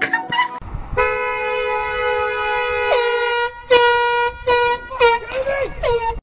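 Car horn sounding, held steady for about two and a half seconds and then given three short honks, over a low rumble.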